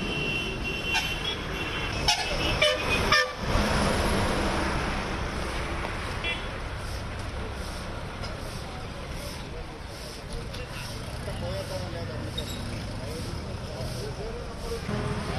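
Vehicle horn honking briefly at the start and again, shorter, about six seconds in, over steady road traffic noise. A few sharp knocks sound about two to three seconds in.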